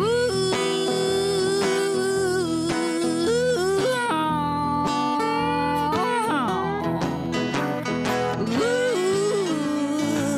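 A country-blues song played live: a resonator guitar played lap-style with sliding notes over acoustic guitar, with a woman singing long held notes with vibrato.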